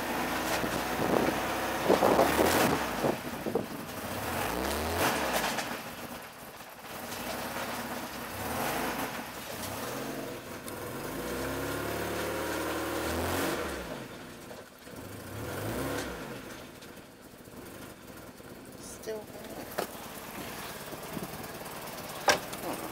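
BMW 318's four-cylinder engine running rough while being fed water, revved up and dropping back about five times.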